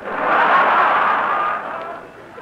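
Studio audience laughing at a punchline, swelling within the first half second and dying away near the end, on an old band-limited radio broadcast recording.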